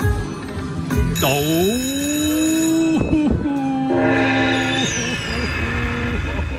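Dragon Link slot machine sound effects as the hold-and-spin bonus triggers. A swooping electronic tone about a second in settles into held tones, then comes a brighter held chord and a high falling whistle near the end.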